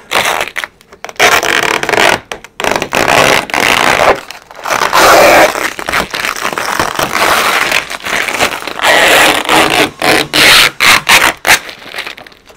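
Clear plastic protective film rustling and crinkling in irregular loud bursts as it is peeled off a car's window frame and bunched up by hand.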